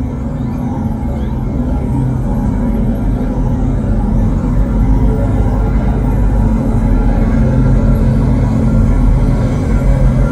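Live rock band with electric bass and guitar playing a slow, droning instrumental passage heavy in low sustained notes. It swells gradually louder.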